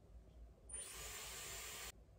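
A steady hiss that starts abruptly about a second in and cuts off just as abruptly a little over a second later.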